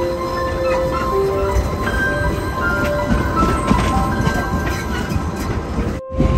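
Soft piano background music laid over the steady low rumble of passenger train carriages running on the rails.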